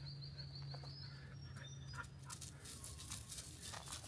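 Faint bush ambience: a high, steady pulsing trill that stops about a second in, then soft scattered crackles of movement through dry leaf litter and grass.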